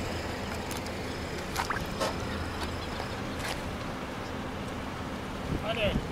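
Water gushing steadily out of an open lawn sprinkler riser into a flooded hole, flushing dirt from the line with the sprinkler internals removed. A few faint clicks over the running water.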